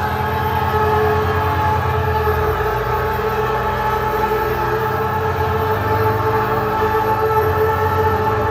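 Tense, suspenseful background music: sustained droning chords held at several pitches over a low, fast-pulsing bass.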